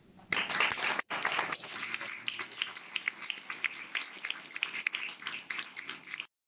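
An audience applauding: a burst of dense clapping starts just after the speech ends, then thins into scattered, separate hand claps.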